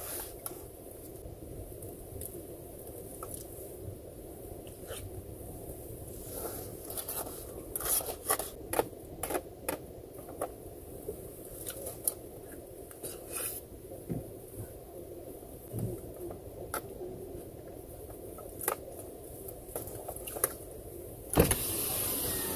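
Steady low rumble inside a car cabin, with scattered light clicks and taps through the middle stretch. Near the end the noise rises sharply and stays louder.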